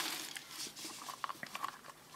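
Faint small clicks and rustling as test-lead hook clips and their wires are handled and fitted into a component tester's test slots.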